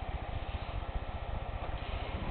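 Computer fan and power supply running: a low, steady hum with a fast, even flutter.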